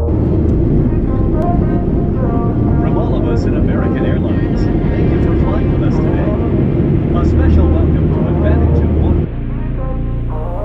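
Airliner and airport noise: a steady jet-engine rumble with people talking over it, cut off abruptly about nine seconds in.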